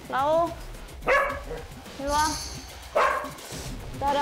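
A dog barking four times, about a second apart, while excitedly refusing to have its leash put on.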